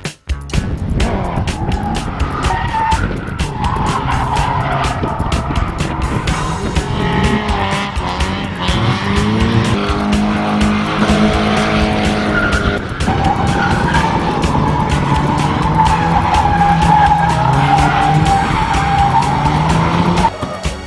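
Drift car engine running hard at high revs with tyre squeal as the car slides. About a third of the way in, the engine note climbs steadily, drops sharply a little past the middle, then holds high and steady.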